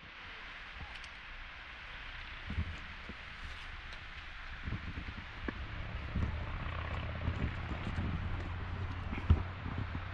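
Steady outdoor rushing noise with a low rumble underneath and irregular soft low thumps.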